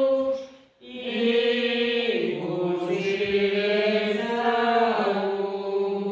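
A slow church hymn sung in long held notes, with a brief breath break under a second in and the melody stepping down at about two and five seconds.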